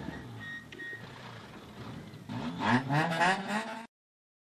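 Honda Integra rally car's engine running quietly at low revs inside the cabin, with a short electronic beep about half a second in. The sound cuts off suddenly just before the end.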